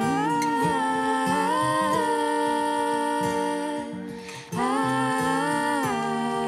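Two women's voices humming a wordless harmony in long held notes, gliding between pitches, with a short break about four seconds in before the next held note.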